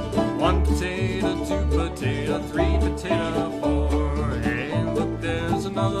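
Old-time string band playing an instrumental break between verses: a plucked-string accompaniment over a bass line that steps from note to note about every half second, with a melody line above it. The vocal comes back in right at the end.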